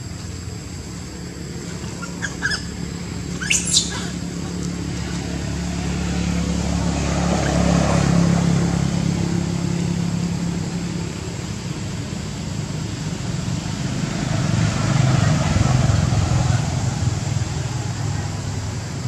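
A macaque gives short high squeaks, a couple of times about two and a half seconds in and again about a second later. Underneath is a low rumble that swells in the middle and again near the end, with a faint steady high whine.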